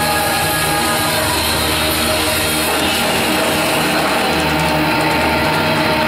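Live pop-rock band playing loudly, with drums and guitars. Held notes stop about three seconds in and the band carries on.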